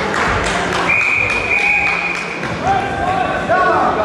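Karate sparring in a sports hall: sharp thuds of strikes and footwork early on, then a steady high tone held for about a second and a half, followed by voices calling out in the echoing hall.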